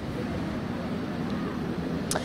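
Steady low outdoor background rumble picked up by a live field microphone, with faint voices of the crowd gathered behind it.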